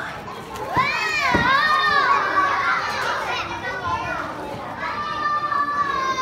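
Young children shouting and squealing as they play, high pitched cries that rise and fall, then a long held high shout starting about five seconds in.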